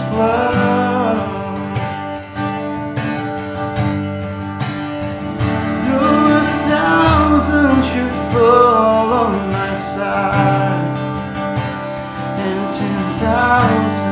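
A man singing to his own strummed acoustic guitar; the singing is clearest in the second half.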